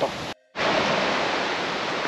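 After a brief dropout about half a second in, a steady rushing noise of flowing water.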